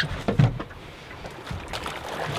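A sharp knock and then a heavier low thump on a small boat's hull as a diver in fins swings his legs over the gunwale, followed by a quieter steady rush of wind and water with a few faint taps.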